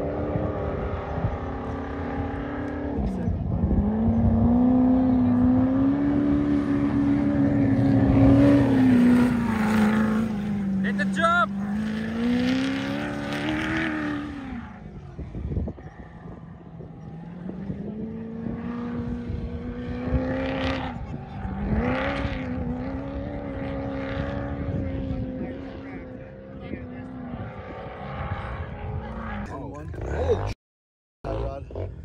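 Sandrail engine running hard under throttle. Its note climbs about three seconds in and holds high, dips and climbs again, falls away about halfway, then rises and holds again.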